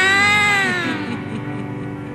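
A woman's voice in one long drawn-out call that rises in pitch, then falls away and fades about a second in, over background music with sustained chords.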